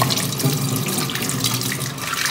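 Kitchen tap running onto a cooking pot being rinsed, the water splashing off it into a stainless steel sink.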